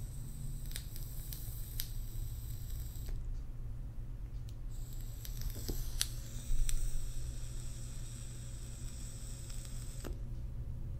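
Long drag on a mechanical-mod e-cigarette with a 510 cartomizer: faint scattered crackles and clicks over a steady low hum, with a slight swell about six and a half seconds in.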